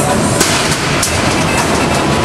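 Combat robots at work in the arena: a steady, dense rattling and clattering of machinery with two sharper hits about half a second and a second in.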